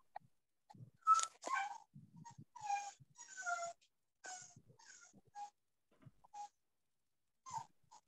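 A dog whining over a video call: a run of short, high-pitched cries, with a pause of a couple of seconds near the end.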